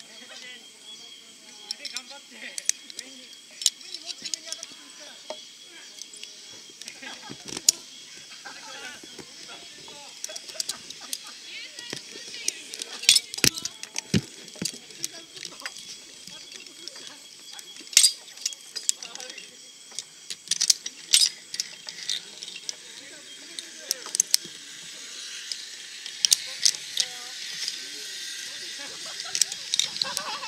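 Metal carabiners and harness hardware clicking and clinking irregularly as the safety gear is handled on a ropes course, over a steady high-pitched background hiss.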